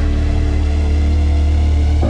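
Electronic deep-house music in a sparse passage: a loud, steady deep bass drone with a few sustained synth tones held over it, and no melody line.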